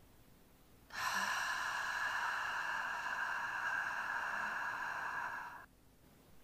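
A woman breathes out slowly and steadily through her lips, a hiss lasting almost five seconds that starts about a second in and stops suddenly. It is a controlled long exhalation in a diaphragm-strengthening breathing exercise.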